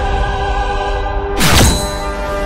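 Dramatic background score: a held, dark chord, struck through about one and a half seconds in by a heavy percussive hit whose low end falls in pitch.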